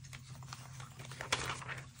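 Loose magazine pages being shuffled and turned over by hand: papery rustles and a few sharp slaps, the loudest a little past the middle, over a steady low hum.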